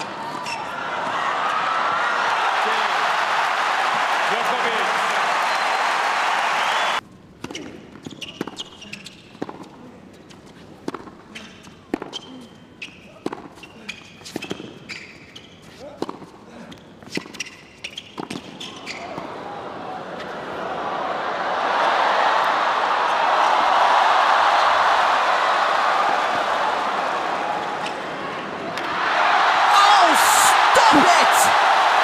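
Tennis arena crowd cheering and applauding, cut off abruptly. Then a hushed arena where a rally is heard as a quick series of tennis racket strikes and ball bounces. After the rally the crowd rises into loud cheering and applause.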